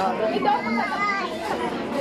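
Children's voices and chatter as kids play close by.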